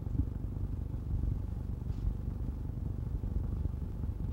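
Steady low rumble of background noise with no speech.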